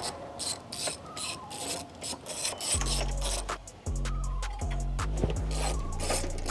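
Socket ratchet clicking in quick runs as it loosens the nuts holding a strut brace over the engine.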